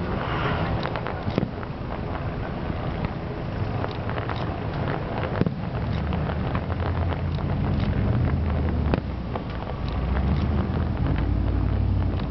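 Distant fireworks going off as a scatter of sharp pops and reports, over a steady low rumble that grows stronger in the second half.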